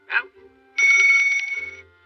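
Small handbell rung rapidly for about a second, a bright ringing of quick, evenly spaced strokes that starts just under a second in and fades away.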